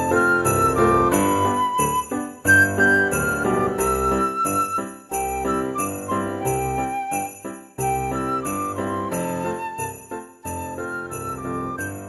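Christmas-style background music with jingle bells shaking on a steady beat under a simple melody.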